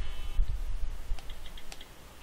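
A few light clicks as digits are tapped into an iPhone lock-screen passcode keypad, spaced irregularly.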